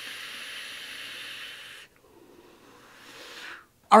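A puff on a Muramasa rebuildable dripping tank atomizer: air drawn through its airflow gives a steady hiss for about two seconds. After a brief break comes a softer breathy hiss, the exhale, which stops just before the end.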